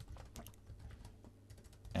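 Faint keystrokes on a computer keyboard, a loose run of separate key clicks as a command is typed.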